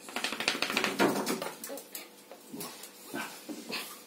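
A wet Jack Russell terrier rubbing and scrabbling itself on a towel over a tile floor: a quick run of sharp scuffing strokes through the first second, a louder scuff about a second in, then scattered softer rubs.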